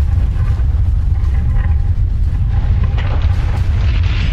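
Intro sound effect: a loud, steady, deep rumble, with a hiss swelling in over it near the end.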